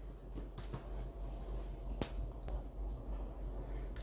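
A few faint taps and soft knocks of hands shaping yeast dough balls and setting them down on a floured worktop, the clearest tap about two seconds in, over a low steady hum.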